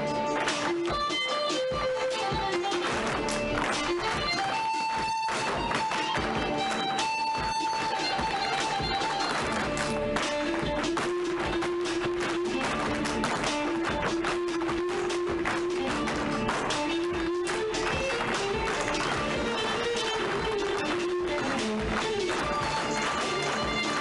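Guitar-led recorded music with a beat, overlaid by many tap shoes clicking in quick rhythms on a wooden stage floor.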